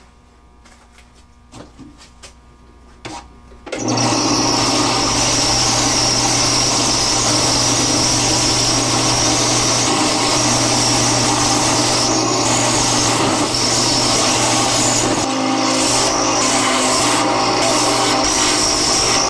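Bench belt sander starting abruptly about four seconds in, then running steadily while a wenge-and-maple guitar neck is held against the moving belt to rough out its contour.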